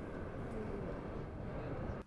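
Steady outdoor street ambience: a low, even rumble with no distinct events.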